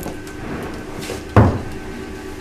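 A red cooking pot set down on the counter: one sudden thump about a second and a half in.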